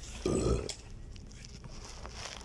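A person burping once: a short, low burp about a quarter of a second in.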